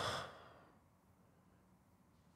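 A man's long sigh into a close microphone, trailing off about half a second in, then near silence.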